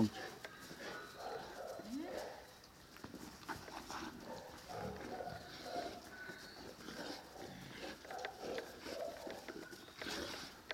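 Two large dogs playing tug-of-war with a knotted rope toy, making low, irregular vocal sounds, with a short rising note about two seconds in.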